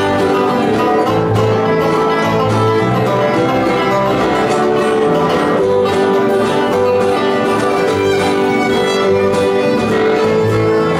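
Bluegrass band playing an instrumental tune: fiddle prominent over banjo, acoustic guitar, mandolin and bass guitar, with a steady rhythm.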